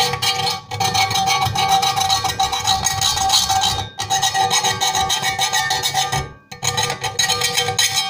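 A small round file worked rapidly back and forth around the edge of a drilled hole in a polished metal body panel, deburring the sharp edges; the panel rings with steady metallic tones under the rasping strokes. The filing pauses briefly about four seconds in and again about six and a half seconds in.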